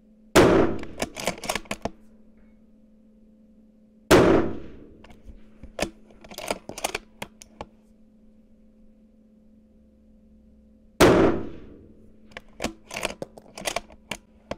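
Three rifle shots from a 6 BRA bolt-action rifle with a muzzle brake, about four and seven seconds apart, each with a short echoing tail. After each shot comes a quick run of clicks as the bolt is worked to eject the spent case and chamber the next round.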